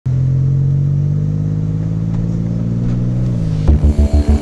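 A DeLorean DMC-12's V6 engine running at steady revs, its pitch dropping slightly about three and a half seconds in. Just before the end a pulsing low music beat starts, about three to four thumps a second.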